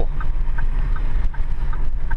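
Inside a Ford Super Duty pickup's cab: a steady low engine and road rumble, with the turn-signal indicator ticking evenly, a little under three times a second.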